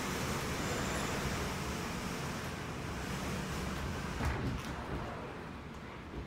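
Typhoon Jebi's storm wind rushing steadily, mixed with driving rain, a dense noise that eases slightly near the end. A brief thump about four seconds in.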